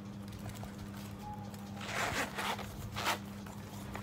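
Metal zipper on a snakeskin zip-around wallet being pulled along in two quick runs, a longer one about two seconds in and a short one near three seconds. A steady low hum runs underneath.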